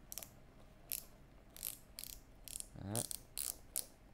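BOA dials on a Specialized S-Works 7 road cycling shoe being turned by hand, giving a run of sharp ratchet clicks in small irregular groups. The dials are being checked and work properly.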